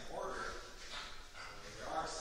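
Speech only: a man talking, lecturing.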